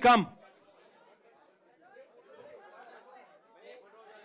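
Speech only: a man's brief call of "come" at the start, then faint chatter of several voices in a large hall.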